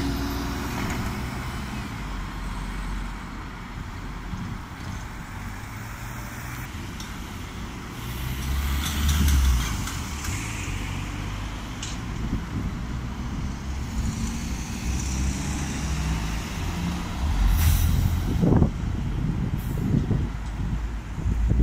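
Street traffic: a Stagecoach double-decker bus's engine running as it moves off, then a flatbed pickup passing close, loudest about halfway through. A short hiss comes near the end as other traffic and a bus approach.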